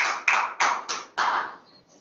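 Hands clapping in a steady rhythm, about three claps a second, five in all, stopping about a second and a half in.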